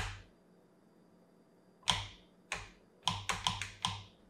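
Three-position safety lever on an Accuracy International AX bolt shroud being clicked between its detent positions. There is a sharp metallic click about two seconds in, another half a second later, then a quick run of about five clicks near the end.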